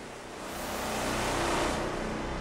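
A whoosh sound effect that swells up over about a second and a half and then fades, as in a logo reveal of a TV channel promo, with faint low tones underneath.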